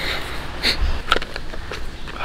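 Hi-vis safety vest rustling as it is pulled on and adjusted, with three or four short sharp clicks and a brief low rumble of wind on the microphone about a second in.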